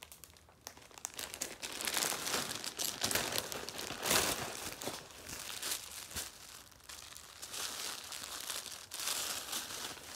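Clear plastic poly bag crinkling and rustling in irregular bursts as a knit garment is pulled out of it, loudest about four seconds in.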